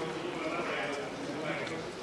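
Faint murmur of voices in the background of a large chamber, with no one speaking close to the microphone.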